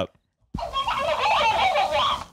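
Talking cactus plush toy repeating back the last words spoken, in a squeaky, high-pitched voice, starting about half a second in.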